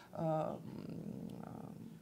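A woman's short voiced hesitation sound into a microphone, followed by about a second and a half of a quieter, rough sound with no clear pitch.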